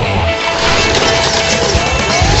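Radio-controlled monster truck running on dirt: a steady motor whine over a rush of noise, the whine climbing in pitch near the end.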